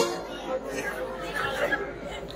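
Faint murmur of distant voices and chatter in a pause between lines of amplified stage dialogue; a loud spoken word cuts off right at the start.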